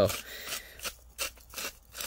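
Hand-twisted salt grinder grinding salt in a quick run of short, gritty rasping strokes, about four or five a second.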